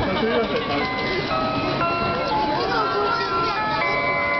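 An electronic melody of plain held notes stepping from pitch to pitch, the warning tune a Shinkansen depot traverser plays while it carries a car sideways, with people talking over it.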